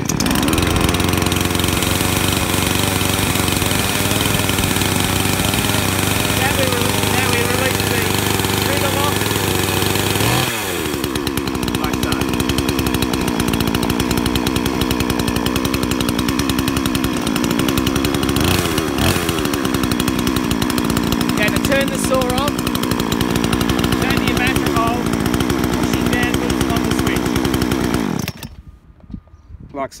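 45cc two-stroke petrol chainsaw catching on a pull of the starter cord and running at a fast idle. About ten seconds in its speed drops to a slower steady idle, with a short rev and fall just before twenty seconds. It is switched off near the end and cuts out suddenly.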